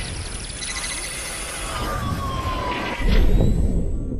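Electronic sound-effect sting of an advertising-break bumper: a sweeping, whooshing wash with a falling tone, then a low boom about three seconds in that is the loudest part before it starts to die away.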